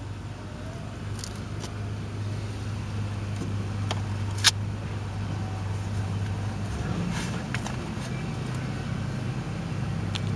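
Steady low hum of a running engine, with one sharp click about four and a half seconds in.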